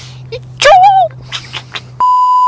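A woman's voice giving a short, high, wavering squeal about half a second in, with a few breathy sounds after it, over a steady low hum.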